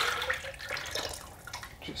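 Liquid pottery glaze poured from a plastic bucket into a plastic measuring jug. It makes a thick, splashing pour that tapers off about a second in, and there is a brief knock near the end.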